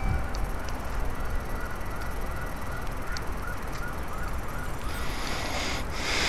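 Distant police siren wailing in a fast yelp, its pitch rising and falling about three times a second, faint under low wind rumble on the microphone.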